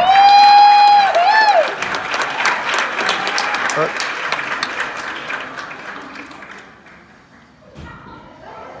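Audience cheering and applauding: a loud held whoop of about a second and a short second note, then clapping that fades out over several seconds.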